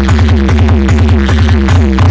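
Very loud electronic dance music from a large DJ loudspeaker stack: a fast pulsing beat of about five hits a second, each hit followed by a falling run of pitched notes, over a heavy steady bass.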